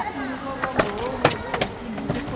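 A car's rear door latch clicking and the door being pulled open, with a few sharp clicks about midway, under indistinct voices.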